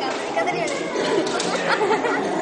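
Chatter of many children's voices overlapping at once, with no single voice standing out.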